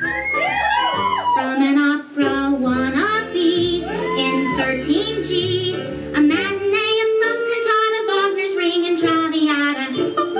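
Recorded show tune played over a sound system: a high female soprano sings without words in operatic style, with rapid trills, sweeping runs and strong vibrato over sustained instrumental accompaniment.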